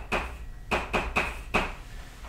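Chalk writing on a blackboard: about five sharp taps and short scratchy strokes as chalk is pressed and dragged across the slate, writing a minus sign, a letter and an equals sign.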